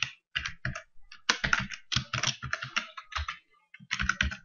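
Typing on a computer keyboard: quick keystrokes in uneven runs with short pauses between them.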